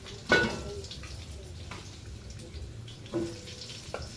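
Chicken frying in a pot of hot oil, a steady low sizzle. A utensil knocks sharply against the pot about a third of a second in, with a smaller knock near the end.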